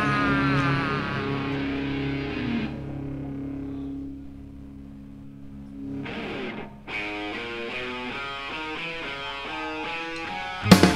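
Live distorted electric guitar: a chord rings out and dies away over the first few seconds, then from about seven seconds in a single guitar plays a quick run of picked notes, with no drums behind it.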